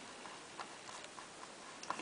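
Whiteboard marker writing on a whiteboard, faint: a few light ticks and scratches of the felt tip against the board.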